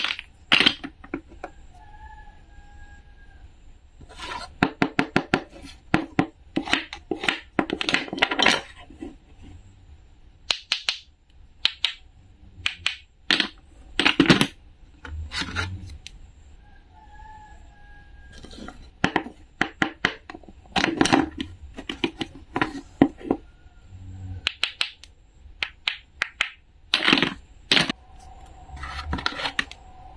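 Clicks, taps and rattles of hard toy play-food pieces and a wooden toy knife being handled against a wooden cutting board, in scattered single taps and quick clusters.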